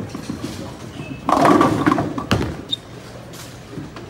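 A bowling ball rolling down the lane, then crashing into the pins about a second and a half in, with the pins clattering for about a second.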